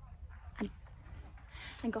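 A pause in the speech: a steady low rumble of wind on the microphone, a brief faint sound about half a second in, and a breath drawn just before she speaks again near the end.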